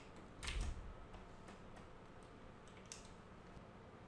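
Faint background hiss with a short clatter of computer keys about half a second in, then a few faint ticks.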